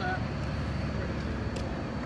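Steady low background rumble of an outdoor parking lot, with no distinct events and a brief faint voice right at the start.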